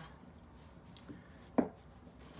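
A single short knock or tap on a hard surface about one and a half seconds in, against quiet room tone.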